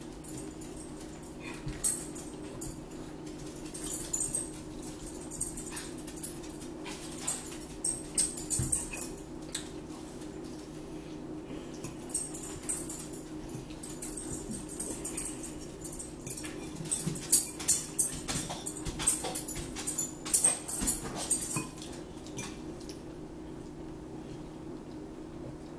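Metal forks and spoons clinking and scraping against ceramic bowls as people eat, in scattered short clicks that grow busier late on, over a steady low hum.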